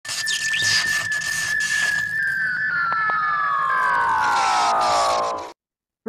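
An intro sound effect: a high whistle-like tone held steady for about two seconds, then gliding steadily downward with a hissing wash over it, and cutting off abruptly about half a second before the end.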